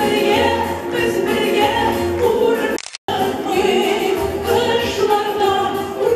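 Three women singing a song together into microphones over a musical accompaniment, in a live hall. About three seconds in, the sound cuts out completely for a split second, then returns.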